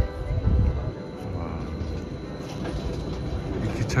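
Electric rack-railway railcar on the Rigi line pulling into the station, running with a low rumble and a brief whine from its drive about a second in.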